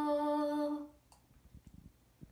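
A girl's unaccompanied voice holding one steady note, the final note of the song, which fades out just under a second in. After that, near silence with a few faint ticks.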